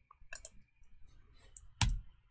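Computer keyboard keys being pressed: a few light clicks, then one louder key strike near the end. This is the Enter key that sends the freshly installed Ubuntu Server virtual machine into a reboot.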